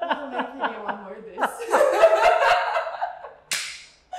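Two people laughing hard, first in quick rhythmic bursts, then a louder, high-pitched woman's laugh. The laughter ends in a single sharp hand clap near the end.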